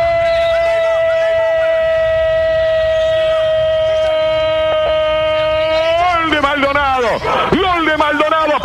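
A radio football commentator's long drawn-out goal cry, one sustained, slightly falling note held for about six seconds, then breaking into fast excited shouting as the goal is described.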